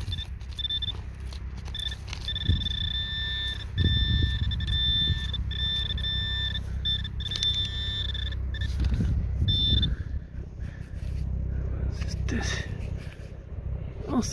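Handheld metal-detecting pinpointer giving a steady high electronic tone that cuts in and out as it is probed through loose soil, locating a buried metal fragment. The tone stops a little before ten seconds in, with a low rumble of handling underneath.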